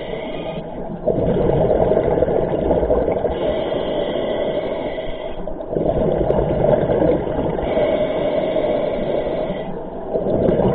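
Scuba regulator breathing underwater: a hissing inhale through the demand valve followed by a louder rush of exhaled bubbles, twice, in a steady rhythm of about one breath every four to five seconds.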